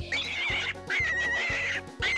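Rabbit squealing as a cartoon sound effect: three separate high, slightly wavering squeals, each under a second long, over light background music.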